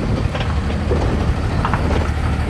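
Tiffin diesel-pusher motorhome moving slowly while towing an enclosed cargo trailer: a steady low engine rumble with a couple of faint clicks.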